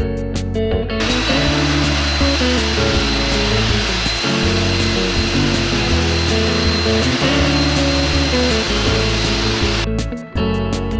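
A steam-spray-and-suction cleaner running, a steady hiss with a thin high whine, over background guitar music. It starts about a second in and cuts off just before the end.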